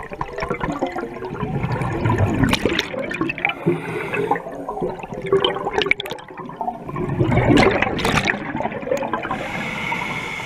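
Exhaled breath bubbling out of a scuba regulator underwater, in two long gurgling exhalations.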